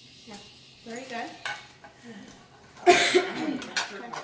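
Ceramic dishes clattering as small bowls are set down on plates on a stone counter, with a sharp, loud clatter just before three seconds in. Short bits of a child's voice come before and after it.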